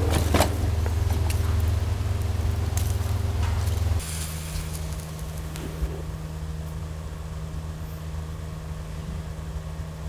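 Steady low rumble of a wood-fired stove's fire, with a few sharp knocks and crackles near the start as firewood is handled. About four seconds in it gives way to a quieter, steady low hum.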